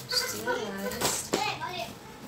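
A young child's high-pitched voice talking or calling out, with two sharp clicks in the middle.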